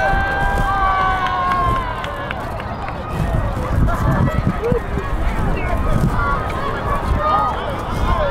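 Several voices shouting and calling out across an open field, some holding long drawn-out calls near the start, over a steady low rumble of wind on the microphone.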